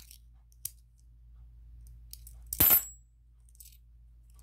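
Korean 500-won coins clinking as they are handled and dropped while being sorted by hand: a single click about half a second in, then a louder clatter of coins with a brief metallic ring about two and a half seconds in.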